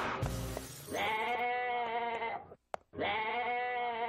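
Goat bleating twice: two long, wavering bleats of about a second and a half each, with a short gap between. A brief rushing noise comes just before the first bleat.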